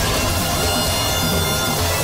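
Dramatic TV-serial background score: sustained held tones over a low pulsing beat.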